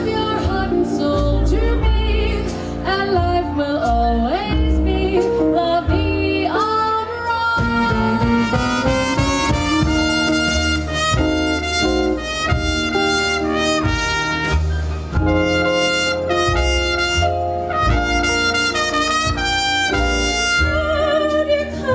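Live swing band playing, with a trumpet lead over upright bass and drums. Three-part female vocal harmony comes in near the start and again near the end.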